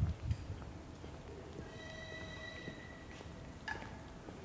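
Railway passenger coaches rolling slowly past: low clunks of the wheels near the start, a steady high squeal for about a second and a half midway, and a sharp click near the end.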